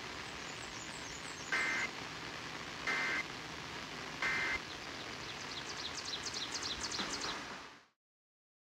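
Three short bursts of two-tone digital data warble, about 1.3 s apart, played through a portable FM radio over steady hiss: the Emergency Alert System end-of-message tones that close a Required Monthly Test. The sound fades out near the end.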